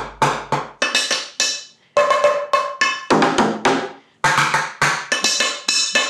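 Improvised drumming on household containers (plastic food tubs, an overturned bucket, a metal pot, a plastic jug) with a wooden spoon and chopsticks: a quick run of strikes, several a second, each ringing briefly at a different pitch, the bigger containers deeper and the smaller ones higher. The playing pauses briefly twice, about two and four seconds in.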